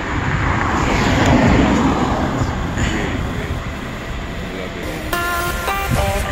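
Wind buffeting an outdoor microphone, a fluctuating low rumble. About five seconds in, background music with held notes comes in.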